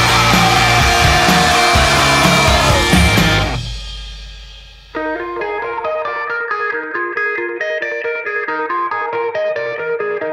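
Distorted full-band punk rock music that fades out about three and a half seconds in, followed by a lone guitar picking a repeating figure of clean single notes.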